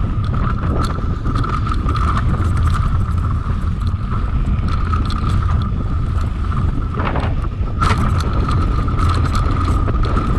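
Mountain bike riding fast down a dirt trail: heavy wind rumble on the microphone, tyre noise and small rattles and clicks from the bike over rough ground, and a steady buzz that drops out briefly about seven seconds in.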